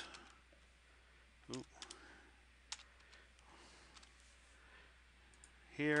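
A few sharp, isolated clicks from a computer keyboard and mouse as a new capacitor value is typed into a software dialog and confirmed, spaced out over a few seconds with faint room hiss between.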